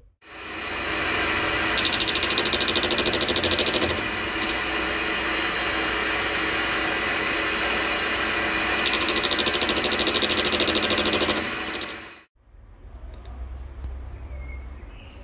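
Small metal lathe running, its indexable-insert cutting tool facing and turning a rusty steel tube. A harsher, higher cutting noise comes in two stretches while the tool is biting, about two to four seconds in and again from about nine to eleven seconds. The sound stops abruptly at about twelve seconds.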